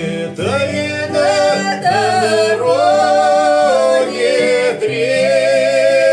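A man and a woman singing a Russian Cossack folk song together, accompanied by an acoustic guitar.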